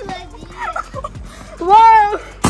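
Excited shouts from children, ending in one loud drawn-out exclamation near the end, over background music.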